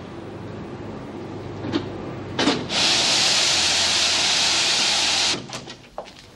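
Laundry steam press hissing loudly for about two and a half seconds, starting a little under halfway through and cutting off sharply, over a steady low machinery hum.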